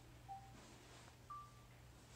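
Sony Bravia X8000H Android TV's interface beeps, faint: a short beep as the remote moves the highlight along the home-screen row. About a second later comes a single higher, slightly longer beep as an item is selected.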